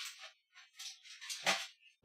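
Rattling and clattering of objects being rummaged through by hand, irregular and stop-start, with a louder clunk about one and a half seconds in.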